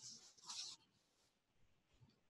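Near silence, with a faint short rustle or scratch in the first second that then dies away.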